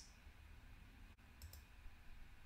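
Near silence with a faint computer mouse click about one and a half seconds in.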